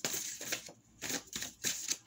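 A deck of cards being handled and shuffled: a run of irregular short papery strokes.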